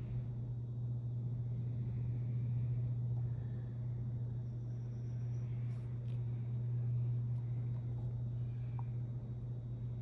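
A steady low hum, like a motor or appliance running, that comes on just before and holds unchanged throughout, with a few faint light ticks over it.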